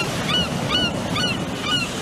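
Short honking bird calls repeating about twice a second over a steady rush like ocean surf, an outro sound effect.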